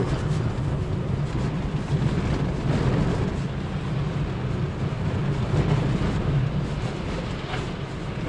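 Toyota RAV4 driving on a wet, broken road, heard from inside the cabin: a steady low rumble of engine and tyre noise.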